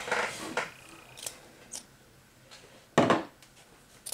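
A few faint, light clicks and taps of small objects being handled, between a woman's speech trailing off at the start and a single spoken word about three seconds in.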